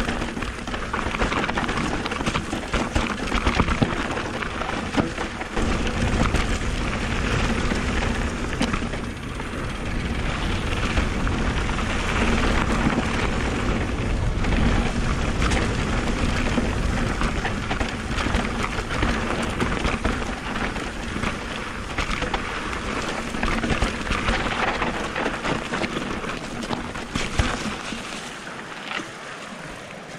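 Wind rushing over the bike-mounted camera's microphone during a fast mountain-bike descent, with the tyres crunching over rocky dirt and the bike rattling and knocking over the bumps. The noise eases near the end as the bike slows.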